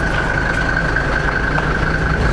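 A vehicle engine idling steadily, with a steady high-pitched whine over the low rumble.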